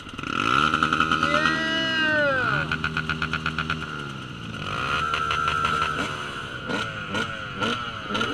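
Two-stroke dirt bike engine revved up and allowed to fall back to a steady idle. Near the end comes a run of quick throttle blips.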